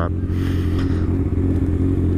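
Kawasaki Ninja ZX-6R 636's inline-four engine running steadily at an unchanging pitch while the bike rolls slowly in traffic.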